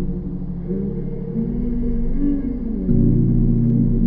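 Slowed ambient music of deep sustained synth pads, a low drone whose chord shifts about a second in and again near three seconds in, where it swells louder.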